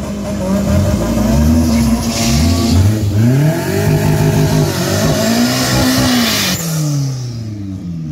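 Hatchback drag cars launching off the start line and accelerating hard down the strip. The engine note climbs and drops back at each of several gear shifts, then eases off as they pull away.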